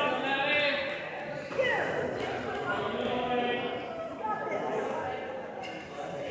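Several voices talking and calling out at once, none clear enough to make out words, echoing in a gym.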